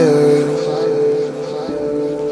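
Background music: held, sustained notes, with one note sliding in pitch right at the start.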